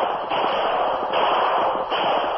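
A radio-drama sound effect on an old, narrow-band broadcast recording: a loud, dense rushing noise that swells and dips in about three surges.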